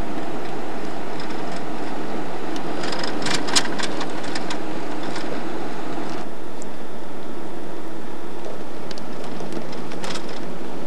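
Steady road and engine noise of a moving car heard from inside the cabin, with a brief cluster of rattling clicks about three seconds in; the upper hiss eases a little past the middle.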